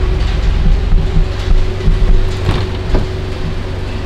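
2013 Scion FR-S's 2.0-litre flat-four idling steadily, with a couple of sharp clicks from the car door being opened near the end.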